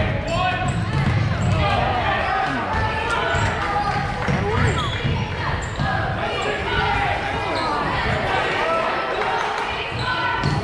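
Basketball being played on a gym court: the ball bouncing on the floor, shoes squeaking in short high chirps, and players and spectators calling out indistinctly.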